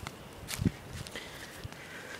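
A footstep on outdoor ground while walking: one dull thud about half a second in, with a few faint ticks after it.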